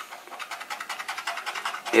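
A metal key scraping the coating off a scratch-off lottery ticket in rapid back-and-forth strokes.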